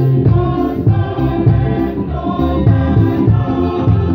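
Mixed choir of men's and women's voices singing in harmony, with strong low bass notes under the higher parts.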